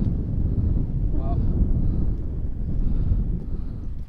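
Wind buffeting the microphone, a loud, steady low rumble.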